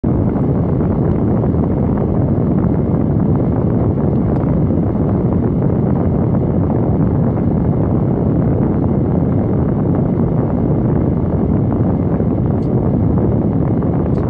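Steady, even rumbling noise inside a car cabin, with no clear pitch and no change in level.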